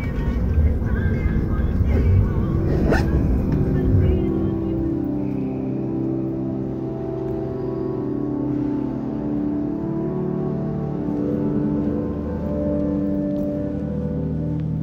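Electroacoustic piece: a low rumble of a recorded airliner cabin fills the first four seconds, with one sharp click about three seconds in. It then gives way to soft sustained tones that slowly shift in pitch, like ambient music.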